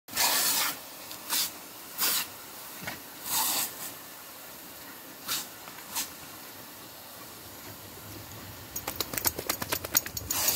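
Lawn sprinkler jet spraying with a steady hiss, broken by several short, louder splashing bursts as dogs bite and snap at the water spray. Near the end comes a quick run of sharp clicks.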